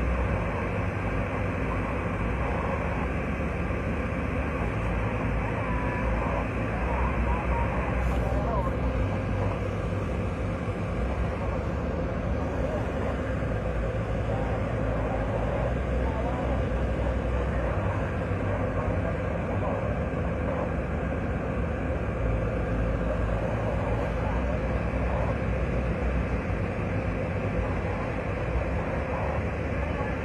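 Steady engine and road rumble inside the cabin of a moving UV Express passenger van. Faint voices or a radio can be heard under it.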